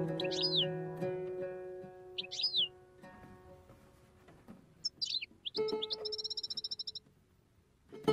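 Oud taqsim: plucked notes ring out and fade over the first few seconds, with a songbird's short, downward-sweeping chirps laid over the music about every two seconds. Past the middle a held note with a rapid trill sounds for about a second and a half, then cuts off suddenly.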